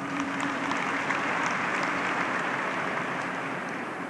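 Audience applauding in a large hall, a dense, steady clapping that eases off slightly toward the end, over a low steady hum.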